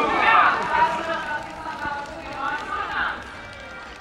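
A distant voice, as over a stadium public-address system, that grows fainter toward the end.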